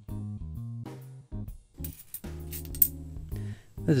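Lounge-style background music with guitar and a steady bass line. A few sharp metallic clicks of 50p coins being handled come through about halfway in.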